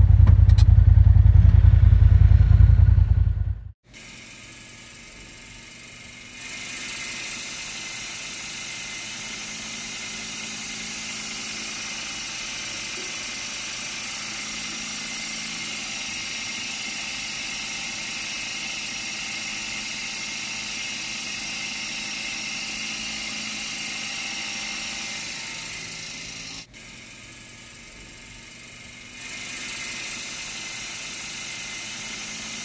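Polaris RZR side-by-side driving along a sandy trail: a steady engine-and-drive whir heard from a camera on the vehicle. It opens with a loud low rumble that cuts off suddenly a few seconds in, and the driving sound dips briefly near the end.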